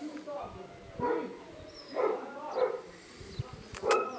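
A puppy making a few short whimpers and yips, about a second apart, with a sharp click near the end.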